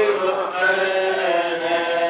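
Group of voices singing a slow hymn without accompaniment: one long phrase of held notes.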